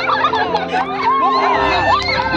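A crowd of people shouting and cheering over background music with held notes.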